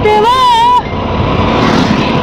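Wind and road rush from a scooter on the move: a steady rushing noise with no tune in it. A woman's sung phrase fills the first second.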